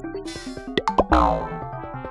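Cartoon title-card sound effects over cheerful children's background music. A short high fizz comes first. Two quick pops follow about a second in, then a falling, boing-like pitch slide with a low thud.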